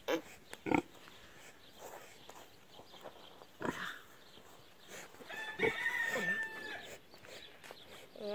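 Pigs grunting a few times, with a longer, higher call lasting about a second just past the middle.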